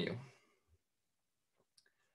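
A man's voice finishing a word, then near silence broken by a few faint, short clicks.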